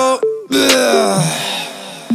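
A wail-like effect in the trap track: it starts suddenly about half a second in, slides slowly down in pitch and fades away.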